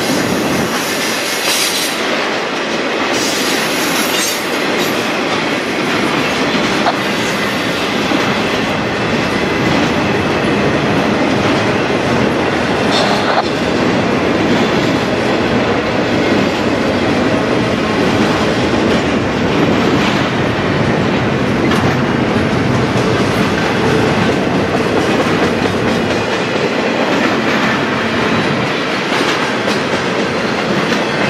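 Intermodal freight cars, flatcars carrying highway trailers and container cars, rolling past close by: a loud, steady rumble and rattle of steel wheels on the rails with clickety-clack over the joints.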